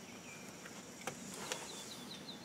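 Faint outdoor background of insects with a steady high buzz. A bird gives a quick run of short high chirps, about six a second, near the end, and there are two faint clicks in the middle.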